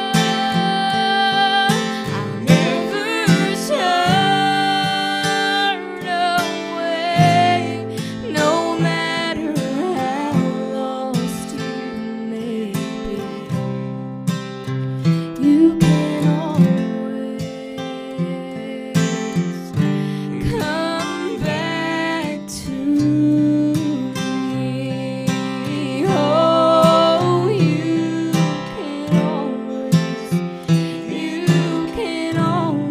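Strummed acoustic guitar accompanying a woman singing.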